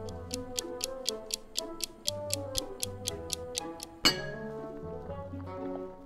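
Clock-ticking sound effect, about four ticks a second, over background music, ending with one sharp hit about four seconds in; it marks time passing while the potatoes boil.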